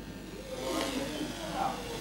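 Faint whirring from a light rubber-band-powered tricycle as its wound-up rubber band unwinds and drives it across carpet.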